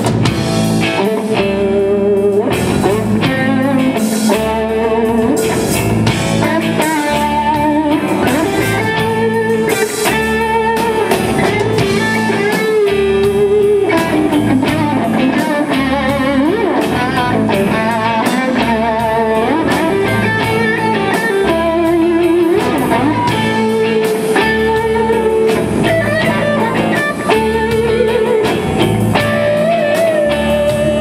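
Live rock band playing an instrumental passage: a lead electric guitar line with bent, wavering notes over rhythm guitar, bass and drum kit.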